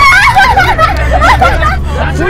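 A woman screaming and yelling in high-pitched, wavering cries over the low, steady hum of a car engine.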